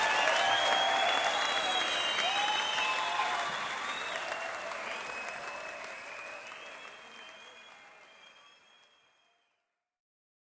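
Audience applauding and cheering with some whistles at the end of a live song, fading out steadily to silence about nine seconds in.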